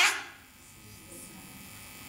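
The tail of a man's loud word through a handheld microphone, then a pause in which only a faint, steady electrical hum from the sound system is heard.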